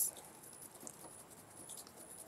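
A quiet pause: faint background hiss with a tiny tick or two, just after the end of a spoken word.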